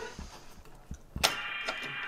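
Faint small clicks of an Allen key turning a bolt into a wooden chair's leg and apron joint, with a sharper click about a second in. Steady chiming tones come in after the sharper click and carry on.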